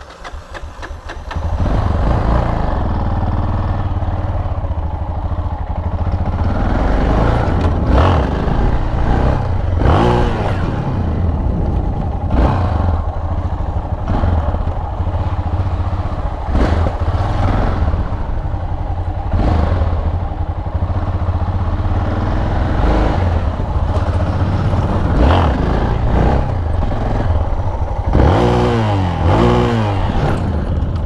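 Yamaha XT660's single-cylinder engine running under way, revved up and eased off again and again. The engine comes up after a brief lull at the start, with a run of quick rev sweeps near the end.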